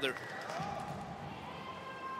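A referee's long whistle, one steady high tone starting about one and a half seconds in, over the constant hum of an indoor pool arena. In a backstroke race it is the signal for swimmers to get into the water for the start.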